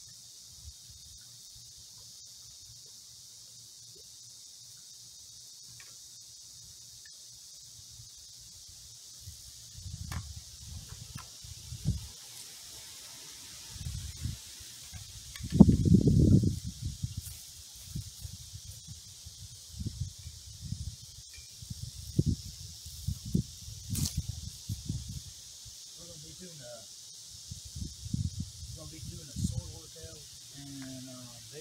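A steady high hiss of summer insects under irregular low thuds and rumbles of handling and movement near the microphone, loudest about sixteen seconds in as the water bottle is brought close to the camera and set down.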